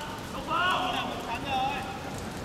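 Players shouting during a five-a-side football match: two raised calls, about half a second in and again near the end, over a steady hum of outdoor background noise.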